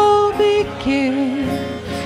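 A woman singing through a PA with acoustic guitar: a held sung note, then a lower line about halfway through, growing quieter near the end.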